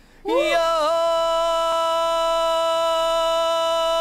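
A male rock vocalist sings one long held note with no accompaniment. He slides up into it about a quarter second in, wavers briefly, then holds it steady.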